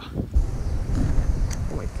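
Wind buffeting the microphone, a loud, uneven low rumble.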